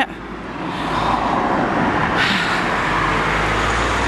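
A small hatchback car approaching along the road, its engine and tyre noise growing louder over the first second or two and getting brighter about two seconds in as it draws close.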